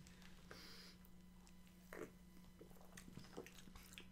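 Near silence: room tone with a faint steady low hum and a few very soft small noises.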